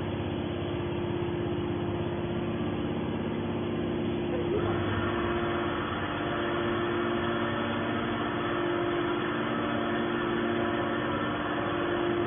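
Hydraulic power unit of a scrap metal baler running steadily, a constant hum with several held tones. About four and a half seconds in, a higher-pitched hiss joins and carries on.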